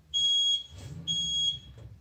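Electronic gym interval timer giving two short, high, steady beeps about a second apart, counting down the last seconds of the rest period before the next work interval.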